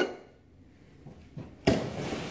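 Quiet room tone, then near the end a sudden knock followed by a short, fading rush of noise.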